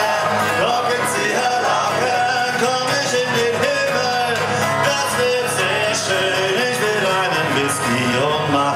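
A man singing a melody live to his own strummed steel-string acoustic guitar.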